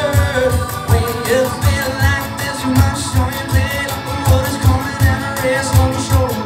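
Live roots-rock band playing a mid-tempo song: guitars, keyboard and bass over a steady beat, with a low hit about three times a second.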